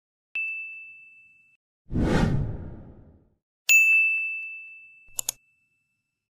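Sound effects for an animated subscribe-button end card: a click and a short ding, then a whoosh about two seconds in. A brighter ding follows, ending in two quick clicks.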